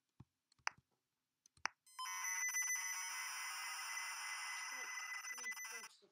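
Three keyboard clicks as a LOAD command is typed, then, about two seconds in, the harsh, buzzing screech of a ZX Spectrum program loading from cassette tape. It runs steadily and stops just before the end.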